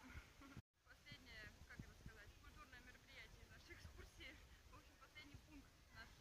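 Near silence with faint, distant voices of people talking. The sound cuts out completely for a moment less than a second in.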